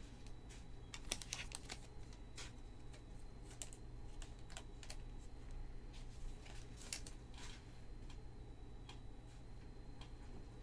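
Topps Chrome baseball cards being handled and flipped through one by one: faint, irregular light clicks and slides, with a few quicker clusters.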